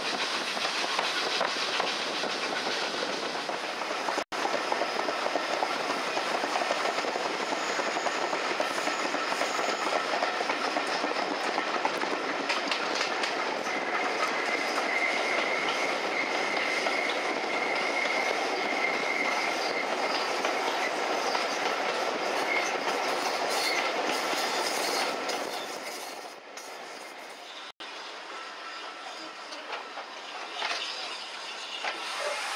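Railway coach running on the track, heard from an open window: steady wheel clatter and rushing air, with a thin wheel squeal for several seconds midway. The noise quietens near the end.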